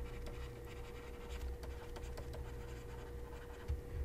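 Stylus writing on a tablet screen: faint, irregular little taps and scratches of pen strokes, over a steady low electrical hum.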